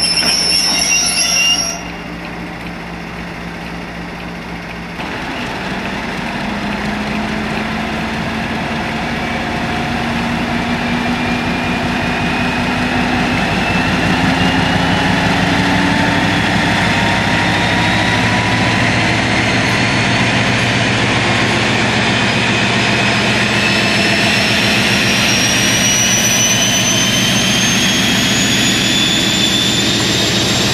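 Class 56 diesel locomotive's Ruston-Paxman V16 engine opening up and pulling away with a train of coal hopper wagons. About five seconds in the engine note starts to climb, and a whine rising in pitch grows above it as the train gathers speed, getting steadily louder. A brief high-pitched tone sounds in the first two seconds.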